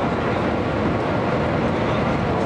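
Steady rushing cabin noise of the Shanghai Maglev, a Transrapid magnetic levitation train, travelling at high speed, with a faint steady high whine.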